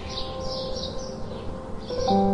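House sparrows chirping in short calls, a few early on and more near the end, over faint sustained background music.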